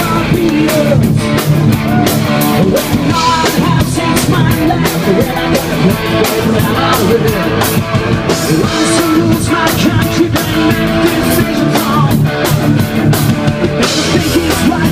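A live rock band playing loud: electric guitar and drum kit, with a singer on a microphone.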